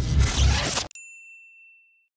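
Closing logo sting of a show's theme: bass-heavy music cuts off sharply about a second in, then a single high ding rings out and fades away.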